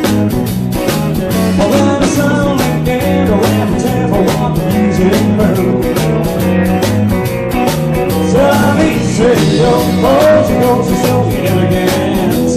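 Live rock band playing at a steady beat: bass guitar, electric guitar and drums, with a man singing into the microphone over them.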